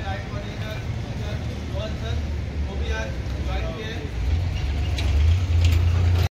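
Indistinct voices over a low vehicle-engine rumble that grows louder over the last two seconds.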